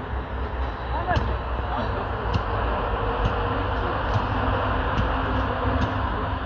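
Indistinct distant voices over a steady low outdoor rumble, with faint clicks about once a second.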